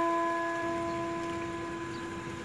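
Ice cream truck's electronic chime jingle, one clean note held and slowly fading away.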